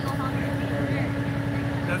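Engine of a side-by-side off-road utility vehicle running steadily while it sits in deep mud.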